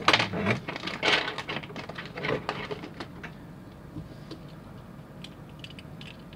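Plastic pry tool scraping and clicking against a toy car's chassis tab as it is worked to release a stuck base, with handling knocks. The louder scrapes come in the first two and a half seconds, then lighter scattered ticks.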